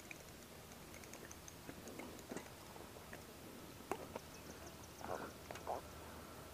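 Mostly quiet, with a few faint clicks and two brief soft rustles near the end. These are the sounds of handling a fishing rod and landing a bullhead on a grassy bank.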